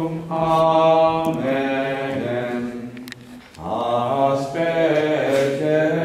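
Liturgical chant sung by voices in a church, long held notes with a short breath break a little past halfway.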